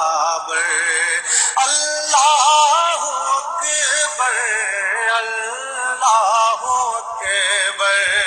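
Male voice singing an Urdu devotional song, holding long notes with a wavering pitch.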